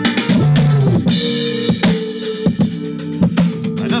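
A song with drums and a bass line playing through an AKIXNO 40-watt Bluetooth soundbar during a listening test. It sounds clean enough that it 'doesn't sound bad at all'.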